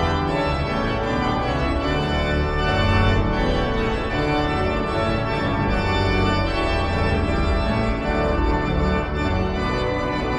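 Hauptwerk virtual pipe organ playing a loud chordal passage of a town-hall style arrangement, sustained chords over a pedal bass line changing every second or so.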